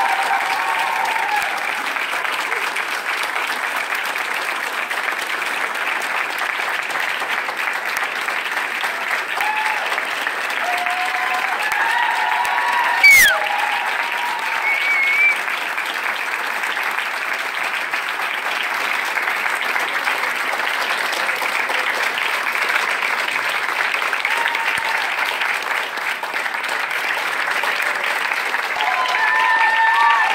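Audience applauding steadily, with scattered voices and one sharp knock about thirteen seconds in.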